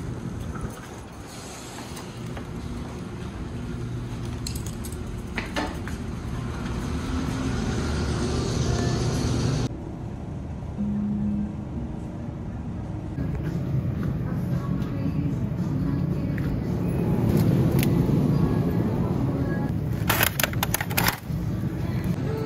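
Background music over shop ambience with murmured voices, and a quick cluster of clicks and knocks near the end as plastic packages are set into a plastic shopping basket.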